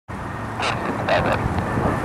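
Steady low rumble of an Airbus A319's IAE V2500 turbofans on final approach, with wind on the microphone. Short bursts of a voice come over it about half a second and a second in.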